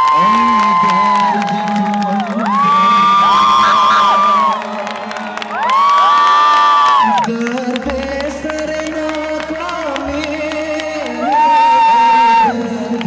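Live band music from a singer, keyboard and drums: long held melody notes that slide in and out, over a steady lower drone, with audience cheering.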